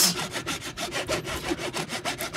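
A saw cutting into a human skull, with fast, even rasping back-and-forth strokes.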